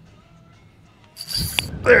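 About a second of quiet, then a sudden rush of noise with a low rumble as an angler sets the hook on a biting redfish.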